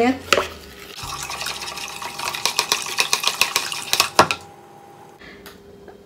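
Plastic spatula stirring a liquid yeast-and-egg mixture in a plastic bowl: a quick run of scraping clicks against the bowl for about three seconds, stopping with a knock about four seconds in.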